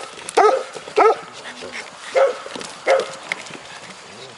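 Golden retriever puppies giving about four short, high-pitched yipping barks, spaced roughly a second apart.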